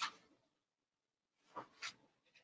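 Paintbrush brushing across a canvas: two short scratchy strokes in quick succession near the end.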